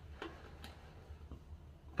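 A few faint clicks and taps, spaced out over two seconds, as shaving gear is handled.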